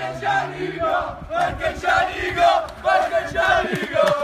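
A group of voices chanting or shouting together in a loud, rhythmic chant, with a beat roughly twice a second, in the manner of a football chant.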